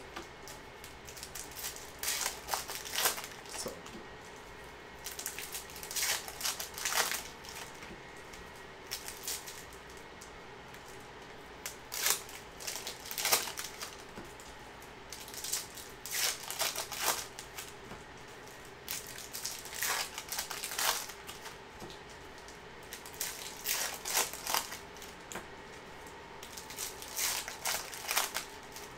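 Foil wrappers of Upper Deck Series Two hockey card packs crinkling and tearing in short bursts every few seconds, with a softer rustle of cards being handled between them.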